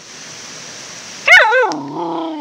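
A young Samoyed gives a single call, a little over halfway in: it starts high, wobbles up and down, then settles into a lower held note for about a second.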